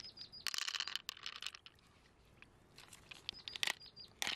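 Pearls dropped by hand into an open giant mussel shell, clicking and clattering against the shell and each other in a quick cluster about half a second in. A second run of clicks comes near the end as the shell full of pearls is handled.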